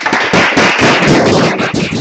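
Audience applauding: a loud, dense run of hand claps.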